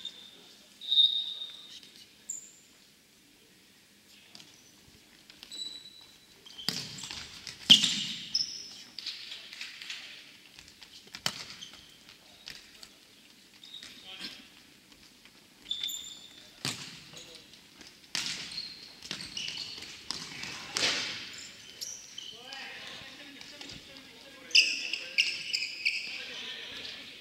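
Futsal ball being kicked and bouncing on a hardwood gym floor in an irregular series of sharp thuds, the loudest about eight seconds in, with short high squeaks of sneakers on the floor between them.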